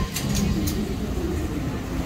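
Outdoor walking ambience: a steady low rumble with faint distant voices, and three short sharp ticks in the first second.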